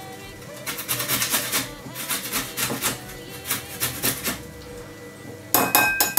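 Fresh ginger root scraped on a stainless steel box grater in three runs of quick rasping strokes. About five and a half seconds in comes a sharp metal clank with a brief ring as the grater knocks against the ceramic bowl.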